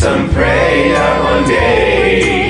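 One man's voice multi-tracked into several parts, singing in choral harmony, with a note held from about half a second in and a change of note near the end.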